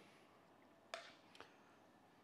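Near silence, with two faint clicks, one about a second in and a weaker one just after, from a spoon as buttery smoked salmon is spooned from a pan into a glass jar.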